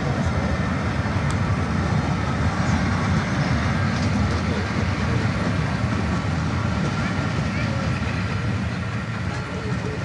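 Jubilee class three-cylinder 4-6-0 steam locomotive 45690 'Leander' working a train away, its exhaust mixing with the rumble of coaches rolling over the rails. The sound is steady and eases off slowly toward the end as the train draws away.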